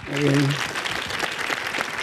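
Applause from an audience: many hands clapping in a dense, steady patter. A short spoken word is heard at the very start.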